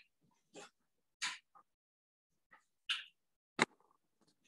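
Handling noise from a video camera being moved and repositioned: a series of short rustles and bumps, with a sharp knock shortly before the end.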